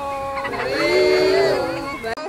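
Several people singing a wavering, sustained traditional chant together in overlapping voices.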